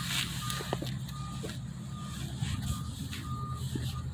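A vehicle's reversing alarm beeping steadily, one short high beep about every 0.7 seconds, over a low, steady engine rumble.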